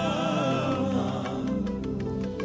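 Live gospel worship music: a woman's lead voice holds a wavering sung line over sustained keyboard chords, then fades about halfway through while the band plays on.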